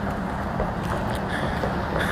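Steady outdoor background noise with a low rumble and no distinct event.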